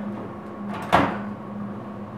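Countertop microwave oven door unlatched and swung open: a sharp click about a second in.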